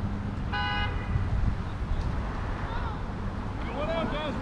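A short car horn toot about half a second in, over a steady low rumble of wind on the microphone.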